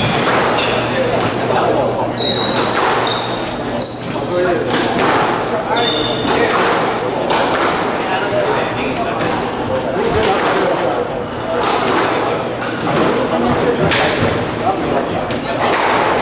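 A squash rally: the ball repeatedly smacked by rackets and hitting the court walls in a string of sharp thuds, with sneakers squeaking on the wooden floor a few times in the first seconds. Voices murmur throughout in a reverberant hall.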